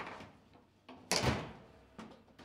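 Table football play: the ball knocked by the rod figures and against the table. The loudest knock comes about a second in and dies away quickly.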